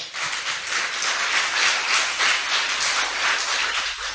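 Audience applauding, a steady patter of many hands clapping that dies down near the end.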